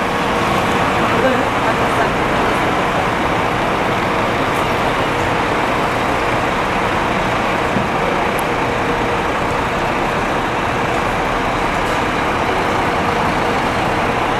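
Diesel engine of a Volvo B450R double-decker coach running steadily as the coach drives slowly into a bus-terminal bay and pulls up close by, with a faint steady hum under the engine noise.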